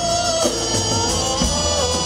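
Live folk-rock music: a strummed long-necked plucked string instrument with a drum kit, under a melody line that holds and glides between notes.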